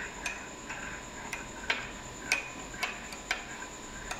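A metal teaspoon clinks against the inside of a ceramic mug as it stirs milky tea, about two light clinks a second.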